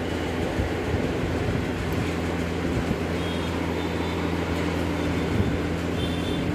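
A steady mechanical hum with an even rushing noise, holding at one level without a break.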